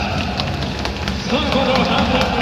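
A voice speaking or calling over steady outdoor stadium noise, with scattered light clicks.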